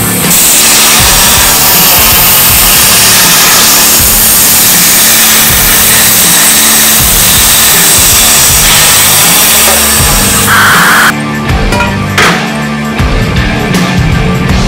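Background music with a steady beat over the loud, steady hiss of a Langmuir Systems CrossFire CNC plasma cutter cutting steel; the hiss cuts off sharply about eleven seconds in, leaving the music.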